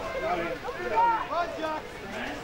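Several voices shouting at once, overlapping calls, with the loudest about a second in.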